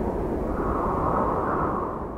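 Cinematic studio-logo sound effect: a swelling rush of noise with a deep rumble under it, holding steady and beginning to fade near the end.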